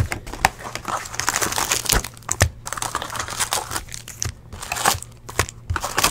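Plastic wrappers of sealed trading-card packs crinkling and rustling as they are handled, with many sharp crackles and snaps.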